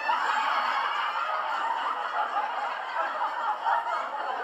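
Several people laughing together, a continuous mass of overlapping laughter.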